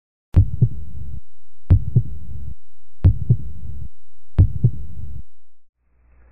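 Heartbeat sound effect: four double 'lub-dub' beats, evenly spaced about 1.4 s apart, fading out near the end.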